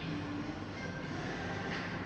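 Coffee shop room ambience: a steady low rumble and hum, with a few faint, brief higher clinks.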